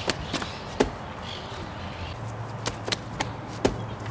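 A palm flip off a cinder-block wall: a handful of sharp taps and thumps from hands slapping the wall, the push-off and feet landing and stepping on grass, the loudest about a second in.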